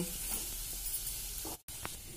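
A steady, faint hiss with no clear events, cut off by a brief dropout about one and a half seconds in.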